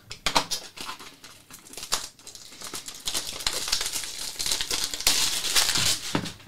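Plastic shrink wrap on a trading-card box being peeled and pulled off, crinkling. Scattered crackles at first, getting denser and louder over the last couple of seconds.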